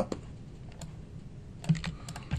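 Computer keyboard keys tapped a few times, light separate clicks with a short quick run near the end, as text is deleted from a line being edited.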